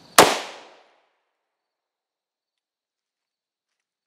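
A single pistol shot from a CZ-52 firing a 7.62x25mm Tokarev S&B full metal jacket round: one sharp crack with a short echo that dies away within about half a second, followed by dead silence.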